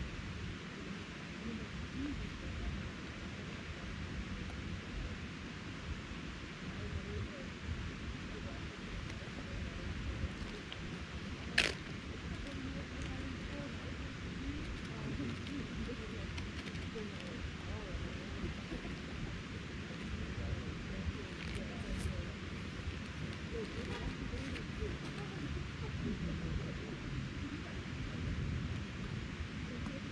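Backpacking gas stove burning with a steady hiss under the pot, with light stirring and rustling. One sharp click about twelve seconds in, and a few fainter ticks later.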